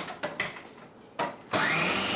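Food processor shredding zucchini and carrots: a few clicks of handling, a brief burst of the motor, then the motor running steadily with a whine that rises in pitch as it spins up.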